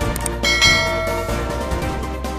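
Background music with a bright bell chime about half a second in that rings and fades over about a second: the notification-bell sound effect of a subscribe animation.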